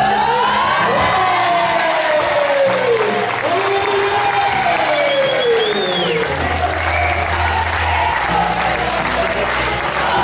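Music with a gliding sung melody over steady bass notes, with a crowd applauding beneath it.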